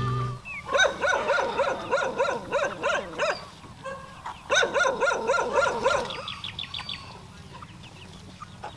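Free-range chickens calling: hens give two runs of short rising-and-falling notes, about four a second, with fainter calls near the end.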